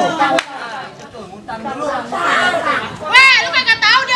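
Speech only: people talking, quieter for the first couple of seconds, then a loud, high-pitched voice breaks in about three seconds in.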